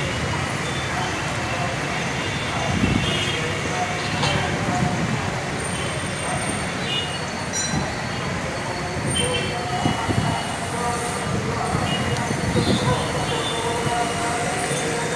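Steady outdoor background noise, with short snatches of people's voices here and there.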